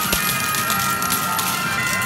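Coin-pusher medal game machine playing bright electronic jingle music made of held tones, with scattered clicks and a single knock just after the start.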